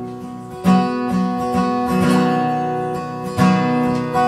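Solo acoustic guitar strummed between sung lines, its chords ringing on, with a fresh strum about two-thirds of a second in and another near the end.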